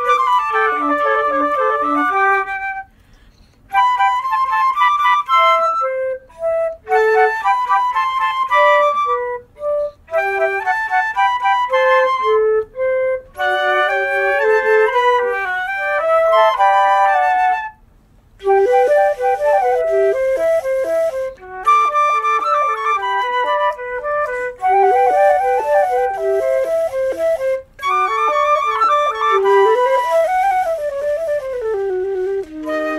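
Instrumental chamber music played in phrases by a small ensemble, with two melodic lines at once at times. The playing breaks off briefly about three seconds in and again about halfway through.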